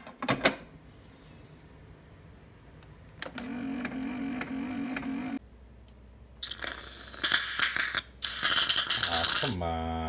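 A few clicks from a Keurig single-serve coffee brewer's lid, then a steady hum for about two seconds. A can of Reddi-wip whipped cream then sprays onto coffee in loud hissing bursts, ending in a short sputter.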